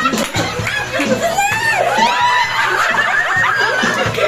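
A group of people laughing together, with several voices overlapping.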